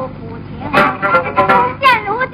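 A woman singing in high, sliding notes to the accompaniment of a plucked sanxian and other Chinese string instruments, heard on an old film soundtrack with little treble.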